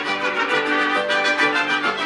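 Mariachi-style music: trumpets and violins playing held notes together over a steady pulse.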